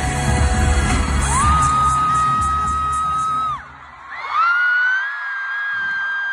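Loud concert pop music with heavy bass plays through the arena sound system and stops abruptly about three and a half seconds in. Over it, a fan close to the microphone lets out a long, high-pitched held scream starting just over a second in, then a second long scream about four seconds in.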